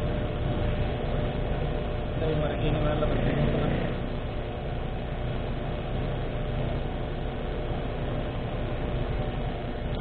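Fuel dispenser running steadily as petrol is pumped through the nozzle into a scooter's tank, a constant hum and rush, with faint voices a couple of seconds in.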